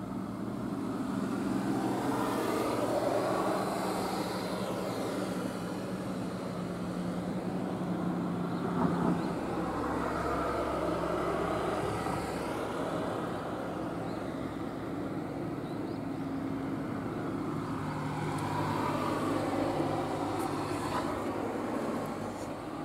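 Road traffic: cars passing the stop one after another, each swelling and fading with a low engine hum and tyre noise, about three passes.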